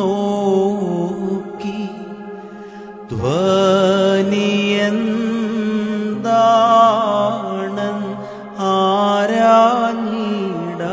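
A male voice sings a Malayalam Christian devotional song in long, wavering held notes over keyboard accompaniment. The line eases off, and about three seconds in a new phrase begins with a note that slides up into pitch.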